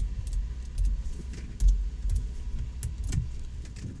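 A few irregular computer keyboard keystrokes as text is typed, over a low steady background rumble.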